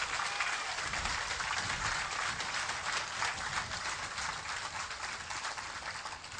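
Audience applauding: dense, steady clapping from a crowd that thins a little toward the end.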